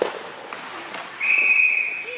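Referee's whistle blown once about a second in: a single steady shrill blast, under a second long, the signal that stops play. A sharp knock of stick or puck comes just before it, at the start.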